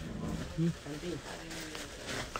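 Faint voices talking in the background, low and indistinct.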